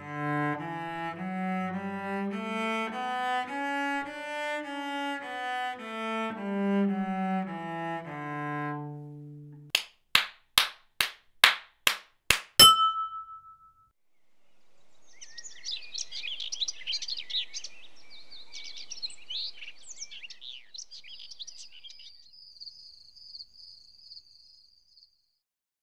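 A cello plays a slow bowed melody that ends on a held low note. It is followed by about eight sharp hand claps over three seconds. After a short pause comes a faint chirring of night insects, ending in a steady high trill like a cricket.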